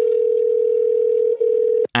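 A telephone ringing tone heard down a phone line: one steady ring about two seconds long, with a brief dip near the end, the sign that the dialled number is ringing through.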